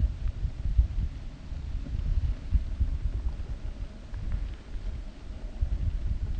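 Wind buffeting the microphone: an uneven, gusty low rumble with no other distinct sound.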